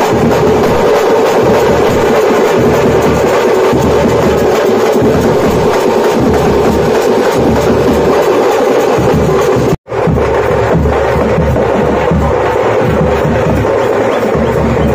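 Pambai melam: pambai drums beaten with sticks in a loud, fast, driving rhythm, the drumming of a sami alaippu that calls on the deity to bring on trance dancing. The sound drops out for a split second about ten seconds in.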